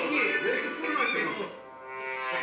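A man speaking over light background music from the played video, with a short high sweeping sound effect about a second in.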